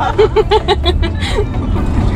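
A woman laughing in a quick run of about five pulses, over the steady low rumble of road and tyre noise inside a Tesla Model 3 cabin as the car accelerates.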